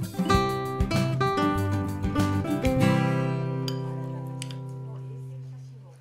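Background music on acoustic guitar: a few strummed and plucked chords, then a final chord that rings out, slowly fades and stops near the end.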